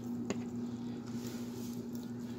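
Plastic LEGO plates being handled and pressed together, with one faint click a little way in, over a steady low hum.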